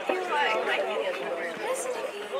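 Several people chatting at once, their voices overlapping.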